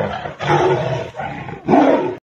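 Tigers roaring in a fight: a string of loud, rough roars, the loudest coming near the end.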